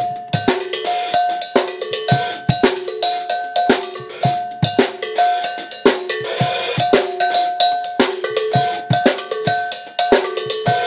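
Cowbell struck with a drumstick in a fast, syncopated funk pattern, ringing on two alternating pitches, with drum hits underneath. About six seconds in, a bright cymbal wash rings for about a second.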